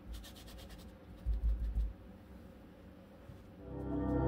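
Faint dabbing of a foam paint brush on plaster scenery, with a low bump about a second in. Ambient background music fades in near the end.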